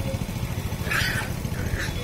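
A pig being caught with a rope gives two short noisy squeals, one about a second in and a weaker one near the end, over a steady low rumble.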